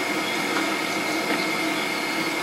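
Steady hiss and hum with a constant high whine, and no distinct event.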